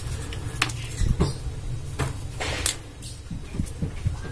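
Chunks of charcoal potting medium knocking and clinking against each other and the clay pot as they are picked out by hand: a scattered series of short, light knocks over a steady low background hum.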